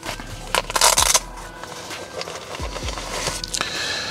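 A fabric Faraday key pouch being opened and the key fob pulled out of it, with rustling and handling noise and a short burst of ripping sound around a second in.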